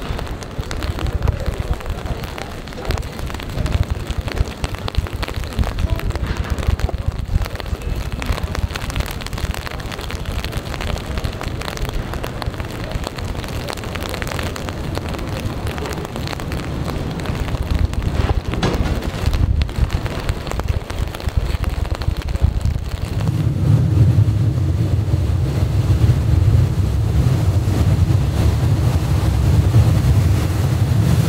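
Wind buffeting the microphone, with rain. About three-quarters of the way through, a lake passenger ship's engine comes in as a steady low hum.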